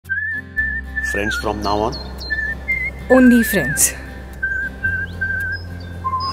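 A whistled tune, mostly held on one high note with small warbles and short breaks, over a low sustained bass note of background music. A short spoken "haan" comes about a second in, and another brief voice about three seconds in.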